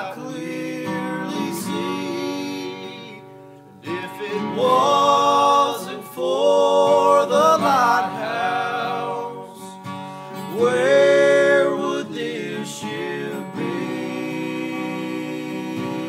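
Men singing a country gospel song to acoustic guitar accompaniment, in sung phrases with instrumental stretches between them.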